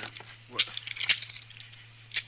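Metal handcuffs clicking and rattling shut: a quick cluster of small metallic clicks about half a second in, over a brief spoken word. A steady low hum runs underneath.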